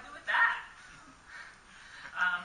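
A person's voice: one short, loud, harsh vocal sound about half a second in, then a fainter one a little later.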